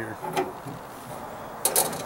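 A quick pair of metallic clicks near the end: the tailgate's latch rods knocking against the sheet metal inside the handle opening as they are let go.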